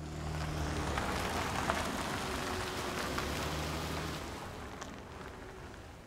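Car driving: steady road and engine noise with a low hum, dying down over the last two seconds as the car slows to a stop.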